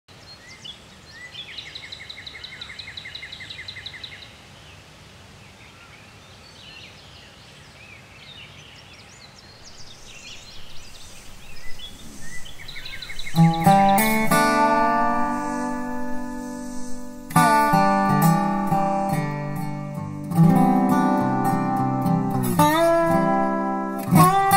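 Quiet outdoor ambience with a bird's rapid trill, then, a little past halfway, a resophonic guitar starts: fingerpicked notes ringing out, with a few notes gliding in pitch near the end.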